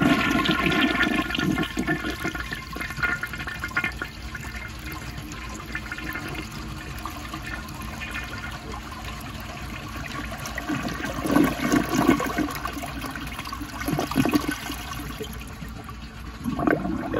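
1955 Eljer Duplex toilet flushing. Water rushes into the bowl and down the siphon-jet trapway, loudest in the first few seconds, then settles to a steadier run, with louder surges about 11 and 14 seconds in.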